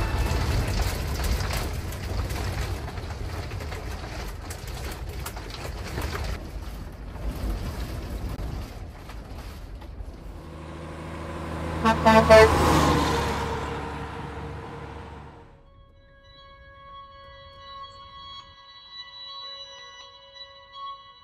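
Storm wind and rain buffeting a motorhome, a rushing, rumbling noise that slowly eases. About twelve seconds in a louder pitched sound swells and fades, and from about sixteen seconds soft background music takes over.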